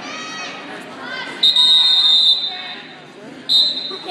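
The wrestling match's end-of-period signal sounding: a shrill, steady high-pitched blast about a second long, then a second, shorter blast near the end, marking the end of the first period.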